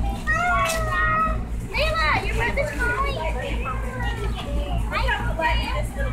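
Young children's high voices chattering and calling out over one another, with a steady low rumble underneath.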